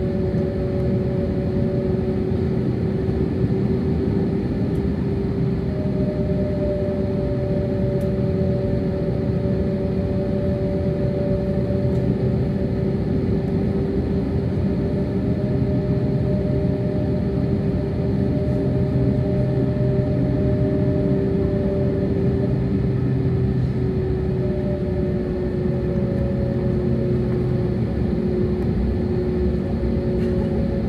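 Airliner cabin during taxi: the jet engines run at idle under a steady low rumble, with two steady whining tones over it. The higher whine fades out for a few seconds twice and then returns.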